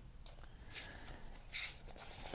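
Faint rustle of a deck of tarot cards being fanned and slid apart in the hands, with two soft card slides, one near the middle and one near the end.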